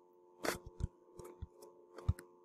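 Faint, irregular clicks from a computer mouse and its scroll wheel as a document is scrolled, the sharpest about half a second in, over a steady low electrical hum.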